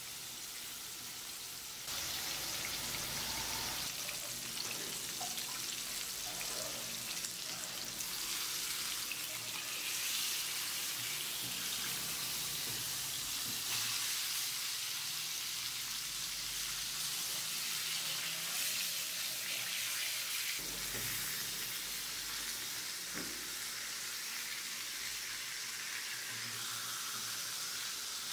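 Pork chops sizzling steadily in hot oil in a nonstick frying pan; the sizzle gets louder about two seconds in.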